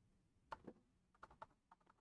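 A few faint, soft computer keyboard keystrokes, about six scattered clicks, over near silence.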